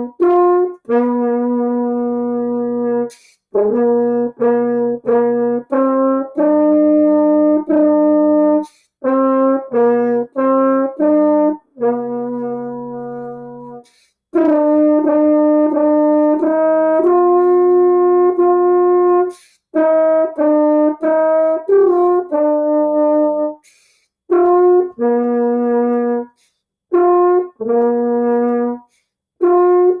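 French horn played solo: a simple tune in short phrases of separate tongued notes, with brief breaks for breath between the phrases.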